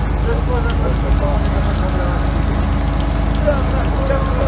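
An engine running steadily at idle, a constant low hum, with faint voices talking over it.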